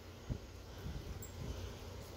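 Camera handling noise as the hand-held camera is swung around among garden plants: a low rumble with a soft knock about a third of a second in and a few faint knocks after it.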